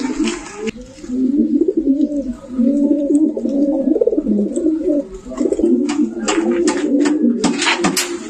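A loft of domestic pigeons cooing, many birds at once, their low coos overlapping without a break. A few sharp clicks and knocks come in near the end.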